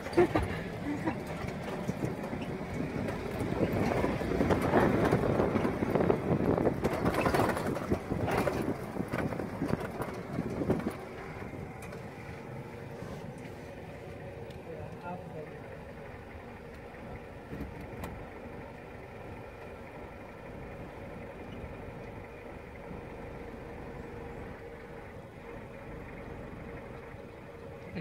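Safari vehicle's engine running as it drives over a dirt track, louder for about the first eleven seconds and then settling to a quieter steady hum.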